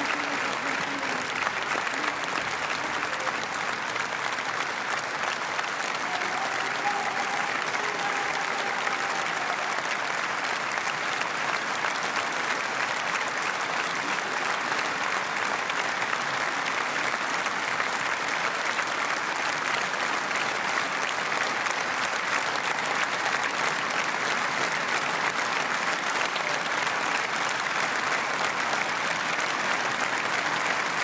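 Sustained applause from a large standing audience, an even clapping that neither builds nor fades.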